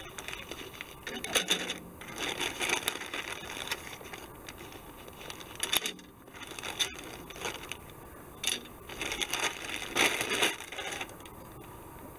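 Clear plastic kit bag crinkling in irregular bursts as it is pulled off the plastic parts sprues, with one sharp click about seven seconds in.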